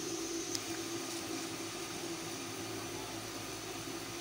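Steady low hum and hiss of kitchen background noise, with one faint click about half a second in.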